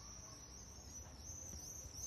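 Faint, steady insect chirping high in pitch, over a low background rumble.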